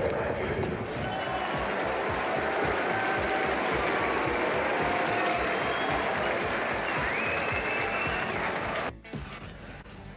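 Cricket-ground crowd applauding and cheering a fallen wicket, a steady wash of noise that opens with a sharp crack. It drops away suddenly near the end.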